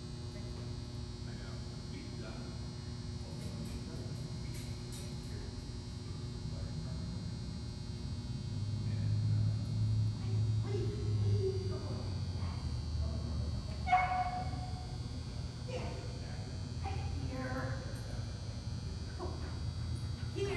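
Steady electrical hum in a large indoor arena, with a few short distant calls, voices or barks, in the second half. The loudest is a sharp call about two-thirds of the way in.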